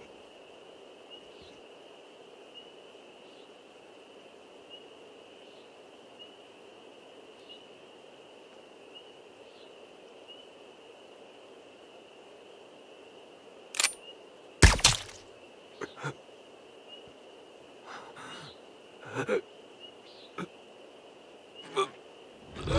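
A steady night chorus of insects, with a faint repeated chirp every second or so. About two-thirds of the way in, a run of sharp metallic clicks and clacks from a rifle being handled cuts in; the second click is the loudest.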